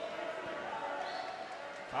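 Steady ambience of an indoor pool hall during play: indistinct distant voices over a noisy wash of water, with no sharp sounds.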